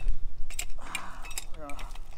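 Light metallic clicks and clinks from handling a metal electric trailer jack and its loose hardware, with a short rustle about a second in.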